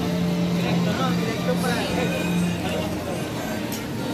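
Busy street-market background: people talking over a steady low hum that breaks off and resumes every half second or so.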